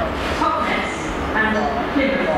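Indistinct voices talking on a station platform over the low, steady rumble of a passenger train moving slowly through the station.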